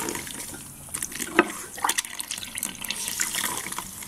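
Tap water running into a sink while a wet makeup sponge is squeezed out in a small bowl of water, with a few sharp splashes near the middle.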